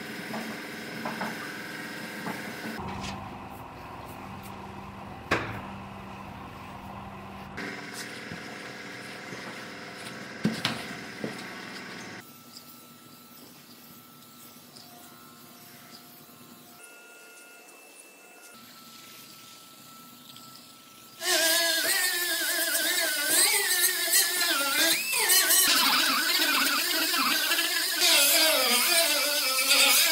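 Background music with sustained chords; about two-thirds of the way in, a louder air-powered die grinder with a small sanding disc starts up, its whine wavering in pitch as it works the edge of an aluminium roof panel.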